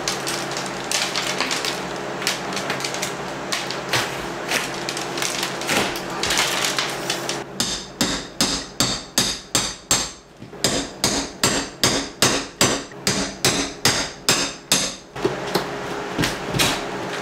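Drywall being pulled and broken away at a wall edge, with irregular crackling and scraping. After about seven seconds comes a hammer striking a metal hand tool held against the wall, a steady run of about two to three blows a second, each with a metallic ring, that stops about a second before the end.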